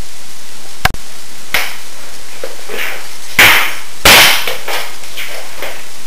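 Rustling and knocking from a person getting up and moving about, heard over a steady microphone hiss. A sharp click with a brief dropout comes about a second in, and the loudest bursts come twice, around three and a half and four seconds.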